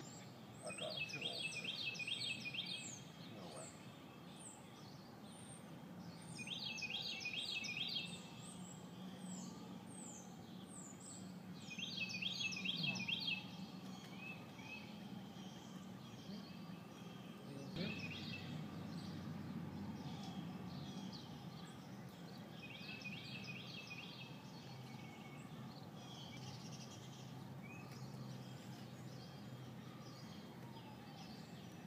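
A songbird singing short phrases of quick repeated high notes, four times, over a steady low outdoor background noise.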